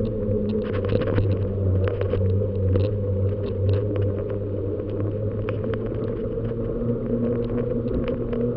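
Steady rumble and rattle of a bicycle rolling over rough, patched asphalt, picked up through a camera carried on the bike, with frequent small clicks and knocks from bumps in the road.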